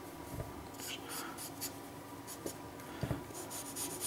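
Felt-tip marker hatching on paper: a run of quick scratchy strokes about a second in and another run near the end, with a soft knock on the table between them.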